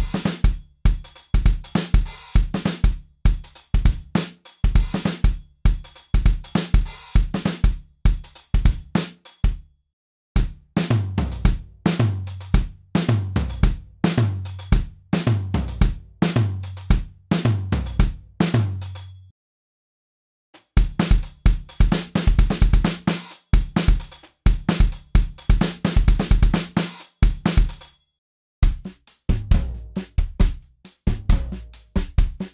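Recorded acoustic drum kit loops played back one after another: kick, snare, hi-hats and cymbals in grooves from about 100 to 135 bpm. Each loop stops briefly before the next starts, about ten seconds in, around twenty seconds and shortly before the end.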